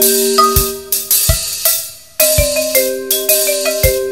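Percussion quartet music: mallet instruments play ringing, sustained pitched notes over sharp strikes and low drum hits. Near the middle the sound briefly dies away, then all the parts come back in together.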